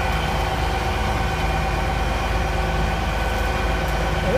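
LNER Azuma (Class 800) bi-mode train's diesel power units idling at a standstill: a steady low drone with a constant high whine over it.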